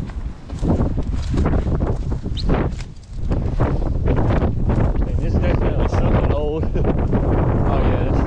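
Strong wind buffeting the microphone with a constant low rumble, while tall dry grass rustles and crunches in quick irregular bursts as someone pushes and climbs through it.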